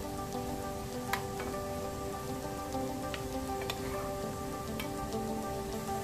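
Hot oil sizzling steadily around milk-powder gulab jamun dough balls as they deep-fry, with a few sharp crackles and pops.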